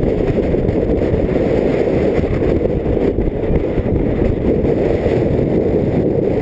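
Strong wind rushing over the microphone: a loud, steady low rumble.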